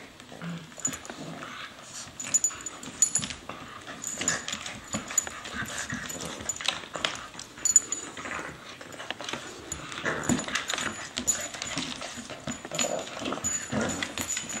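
A bulldog and a corgi play-fighting: a busy, irregular scuffle of many quick clicks and knocks, mixed with short dog vocal sounds.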